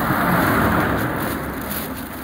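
A car driving past close by. Its tyre and engine noise is loudest in the first second and fades away as it goes.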